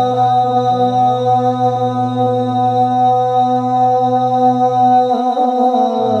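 Unaccompanied naat chanting: a male lead voice holds one long note over a steady low drone of backing voices. The drone breaks off for about a second near the end, then returns.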